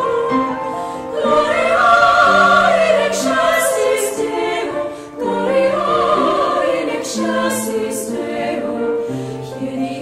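Women's vocal ensemble singing a Christmas carol in several parts, in sustained phrases with a short break between phrases about halfway through.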